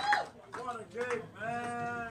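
Audience members whooping and calling out after a song, with drawn-out rising-and-falling cries and one long held call near the end.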